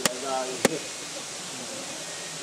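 Two sharp knocks, about half a second apart, as a dry coconut's shell is struck to put small fractures around it.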